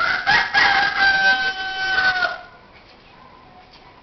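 A loud animal call lasting a little over two seconds: a broken start, then one long held note that falls slightly and stops abruptly.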